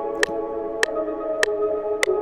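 Omnisphere synth pad playing sustained chords with a simple melody on top, the harmony changing about a second in. A sharp click marks every beat, a little under two a second.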